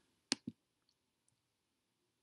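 Two quick clicks of a computer pointer button, about a fifth of a second apart, selecting points in a geometry drawing program to place a perpendicular bisector.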